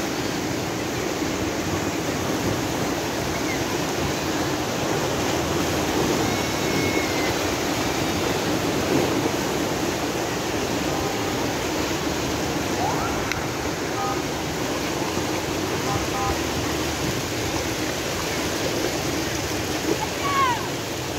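Steady rushing of the Bono tidal bore, its waves breaking and churning along the riverbank.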